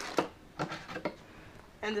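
A few short, sharp clicks and knocks of hard plastic parts being handled, clustered at the start and again around the first second: the black plastic filter cup of a battery backpack sprayer being picked up.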